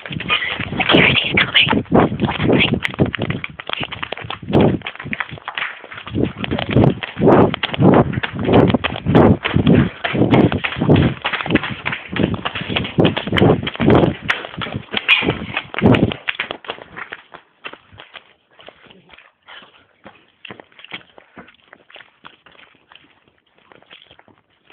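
Rapid, uneven thuds and rustling close to the microphone for about sixteen seconds, then dying away to faint scattered knocks.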